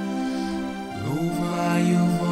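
Voices singing a psalm in slow chant, holding long notes and moving to a new pitch about a second in.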